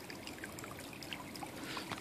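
Stream water trickling steadily, with a few faint small clicks.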